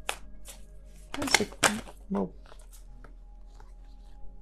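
A deck of tarot cards being shuffled by hand, with a few short papery card snaps in the first half, over quiet steady background music.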